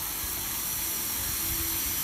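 Dry steam vapour hissing steadily from the nozzle of a wine-barrel-cleaning diffuser rod, fed by a high-temperature steam machine.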